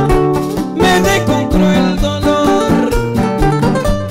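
Two acoustic guitars playing a pasillo live, a continuous run of plucked notes and chords.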